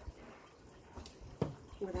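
A mostly quiet stretch with a couple of faint knocks. The sharper one comes about a second and a half in, then a woman's voice begins.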